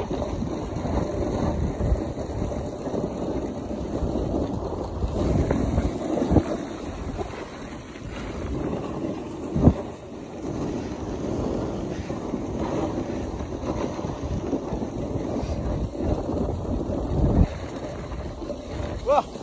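Wind rushing over a phone microphone while riding down a groomed snow slope on a snowboard, with the board sliding on the snow. A few short knocks break through, the loudest about ten seconds in.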